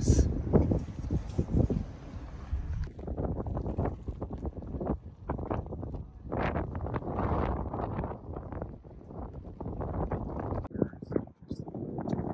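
Wind buffeting the microphone, a low uneven rumble that rises and falls.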